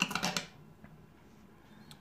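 Steel link bracelet of a Tevise T801A wristwatch clinking and clicking against a wooden desk as the watch is laid down: a few quick clicks within the first half second.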